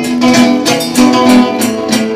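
Live rockola music: acoustic guitars strummed and picked in a steady rhythm over percussion, with sustained melody notes.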